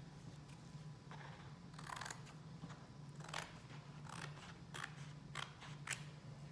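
Scissors cutting watercolor paper: a handful of short, irregular snips, faint and spread through the moment.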